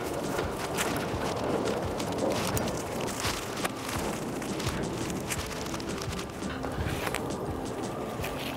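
Steady outdoor noise with scattered short clicks and light rustling, as a line is thrown into a tree and handled.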